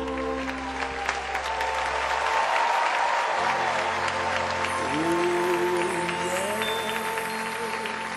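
Audience applauding, with held musical tones sounding beneath the clapping.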